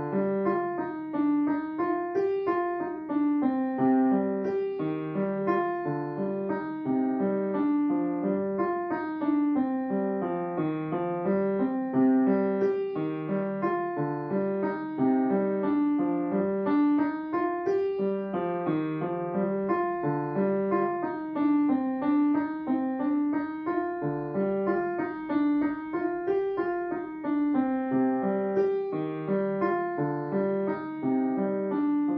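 Solo piano piece played on an upright piano: a brisk, unbroken stream of short notes, with a repeating figure in the lower-middle range under higher notes.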